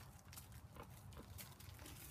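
Faint clicks and crunches of a moose calf's hooves stepping on gravel, several a second, over a low rumble.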